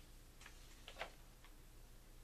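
Near silence with a few faint, irregular clicks and light paper handling as a mailing of brochures and cards is sorted through, the sharpest click about a second in.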